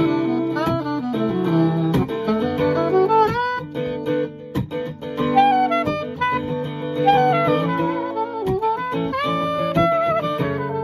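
A steel-string acoustic guitar strummed in chords, with a saxophone playing a melody over it whose notes often slide up or down into the next.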